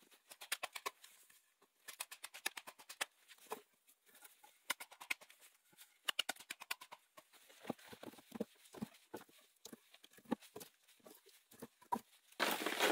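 A hatchet striking a wooden pole held upright on a chopping block, in several short bursts of quick sharp taps, with duller knocks in the second half.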